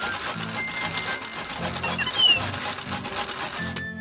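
Cartoon machine sound effect of a robot lifting a glass panel: a fast, continuous run of mechanical clicking and whirring, over light background music.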